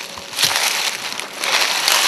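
Footsteps crunching through dry fallen leaves on the forest floor, in two loud bouts.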